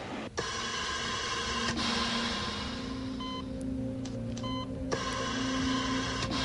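Steady electronic hum with several held tones, and two short electronic beeps about a second apart midway.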